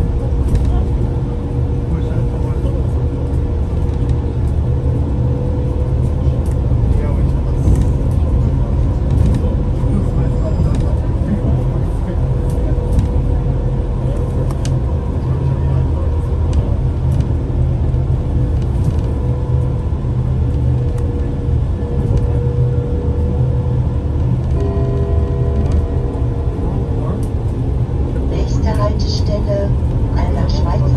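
Inside a Solaris Trollino 18 trolleybus on the move: a steady low rumble of the bus running over the road, with a steady whine from its electric drive.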